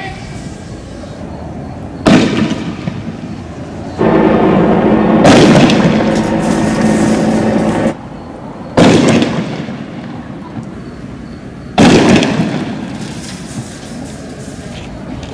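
Loud explosive bangs from street clashes: three sharp reports about two, nine and twelve seconds in, each with a long echoing tail. Between the first two, a loud steady droning tone lasts about four seconds.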